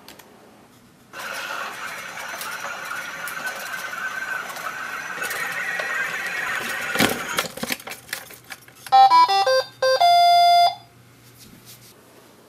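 iRobot Create robot base driving itself toward its charging dock, its drive motors and wheels whirring steadily for about six seconds, then a knock as it meets the dock. Near the end it sounds a quick run of electronic beeps and one longer held tone, the robot's chime on docking and starting to charge.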